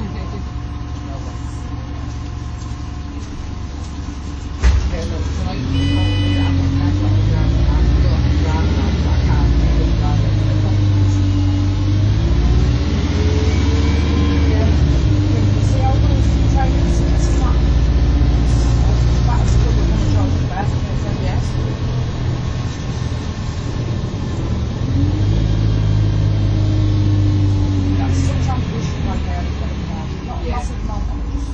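Inside a moving MAN 18.240 single-deck bus: its diesel engine pulls away after a thump about four and a half seconds in, its pitch rising and falling several times through the gear changes. A short electronic beep sounds about six seconds in.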